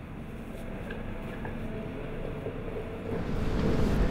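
Steady low machine-room rumble with a few faint light knocks, growing louder about three seconds in.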